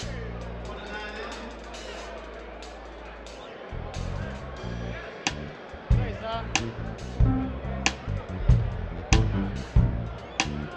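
Live gospel band jamming: a low bass note is held for the first few seconds. Then drums and bass come in about four seconds in, with sharp drum hits growing louder.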